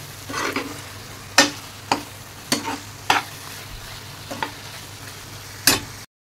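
Metal spatula stirring soya chaap in thick malai gravy in a frying pan: about seven sharp scrapes and knocks against the pan at uneven intervals, over a faint steady sizzle.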